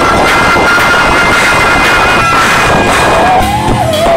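Live soul band playing, with drums, a held note and a singer's voice wavering in pitch near the end, recorded very loud from the audience.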